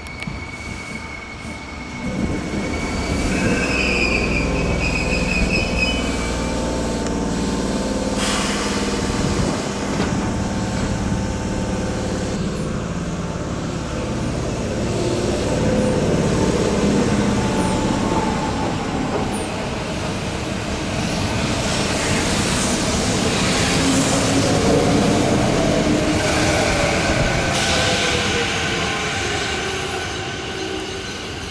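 Sanyo Electric Railway electric trains: a local train pulls out with a low motor rumble and layered hum that rises about two seconds in. Near the end another train comes in on the curve with wheel squeal and a falling whine as it slows.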